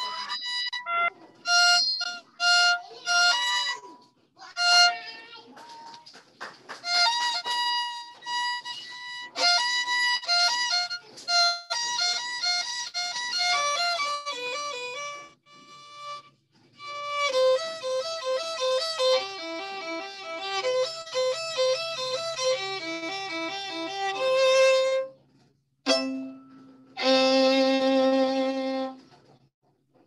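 Violin played by a student over a video call: a study of quick bowed notes run together with short breaks, ending a little before the close. The teacher judges it not perfect but not bad, with the tempo too slow in the last part.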